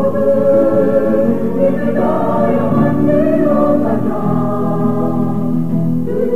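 A Korean church choir singing a gospel praise song in sustained, held notes, over a steady low accompaniment.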